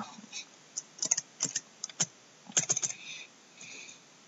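Computer keyboard typing: a dozen or so irregular keystrokes, some in quick runs of two or three.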